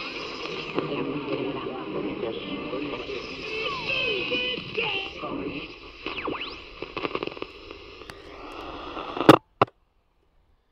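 Medium-wave AM broadcast of a voice playing through a portable radio's speaker, thin and muffled with the treble cut off, with faint sliding tuning whistles partway through. About nine seconds in there is a loud click and the sound cuts off, followed by a second click.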